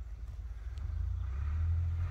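Low rumble of wind buffeting the microphone, growing louder through the second half.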